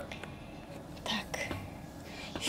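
A faint whispered voice: a couple of short, breathy sounds about a second in, over low room noise.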